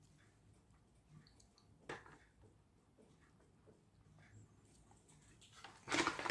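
Near silence broken by a few faint clicks and light rustling of small plastic toy parts being handled and fitted together, the clearest click about two seconds in and the handling noise picking up near the end.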